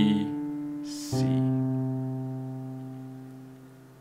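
Piano playing the closing notes of a simple beginner melody: one note struck at the start, then a final note about a second in that is held and slowly dies away.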